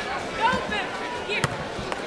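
A volleyball being struck with a sharp smack about one and a half seconds in, with short high calls from voices on court over a steady background hum.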